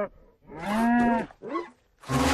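A cartoon character's wordless voiced sound: one drawn-out, low 'uhh' that arches gently up and down in pitch, followed by a short second grunt.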